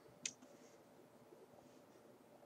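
Near silence broken by a single key click on a computer keyboard about a quarter second in, followed by a few very faint ticks.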